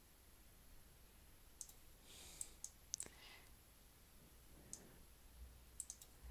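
Near silence with a handful of faint, scattered computer mouse clicks.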